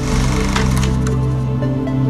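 Electronic intro music holding a low sustained chord, with a bright sparkling sound effect and a few sharp clicks over about the first second.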